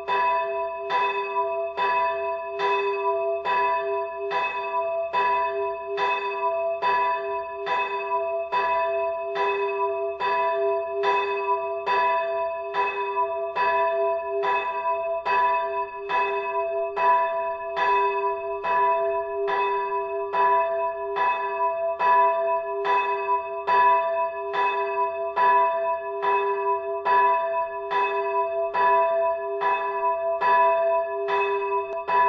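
Swinging church bells in full peal, clappers striking in a steady, even run a little more than once a second, each stroke ringing on into a sustained hum under the next.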